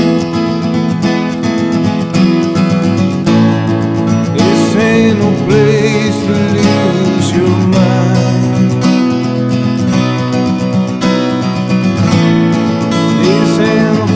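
Instrumental break in a slow country ballad: guitars strumming steady chords while a lead line bends and wavers in pitch above them.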